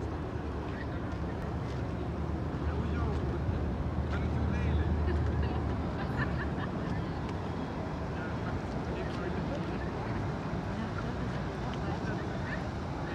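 Outdoor riverside ambience: a steady low drone that swells slightly around the middle, with faint voices in the background.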